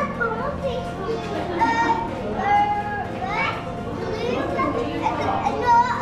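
Young children's voices calling out and shrieking playfully, high-pitched, with no clear words.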